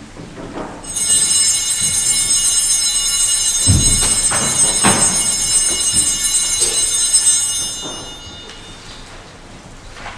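A cluster of small altar bells is shaken, ringing steadily for about seven seconds and then dying away. Two dull thuds fall in the middle of the ringing.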